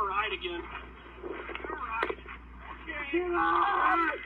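Raised men's voices from police body-camera footage during a struggle, one of them held as a long shout near the end, heard muffled and thin through a TV speaker.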